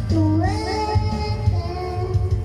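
A child singing karaoke into a microphone over a backing track with a steady beat. A third of a second in, the voice moves through a quick run of wavering notes, then holds steadier notes.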